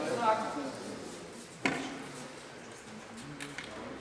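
Faint, indistinct voices with one sharp knock about one and a half seconds in.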